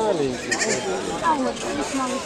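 Young goat bleating: a loud, quavering call that breaks off within the first half-second, with people's voices around it.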